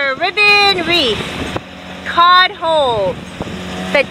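A person's voice making long wordless calls that slide down in pitch, twice, with a steady low hum coming in partway through.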